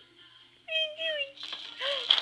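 Seven-month-old baby vocalizing with a high-pitched, drawn-out coo about a third of the way in and a short rising-and-falling squeal near the end. A few light clicks from the baby jumper come as he starts to bounce.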